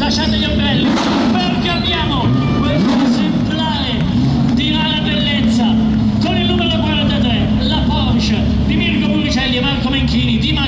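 Porsche 911 rally car's flat-six engine idling steadily, with voices talking over it.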